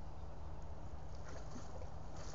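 A tiger wading through pond water, with faint sloshing and splashing that builds over the second half, over a steady low rumble.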